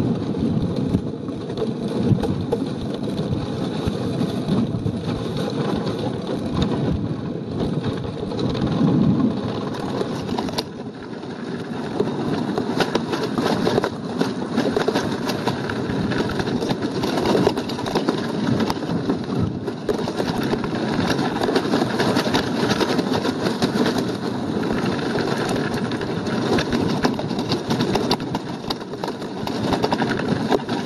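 Wind noise on the microphone of a payload camera descending under parachute: a loud, gusty rushing with constant buffeting, easing briefly about ten seconds in.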